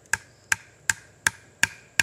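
A wooden beating stick striking a whittled wooden wedge to drive it into a cut in a pine root, to split the root. About five sharp, evenly spaced knocks, nearly three a second, each with a brief ring.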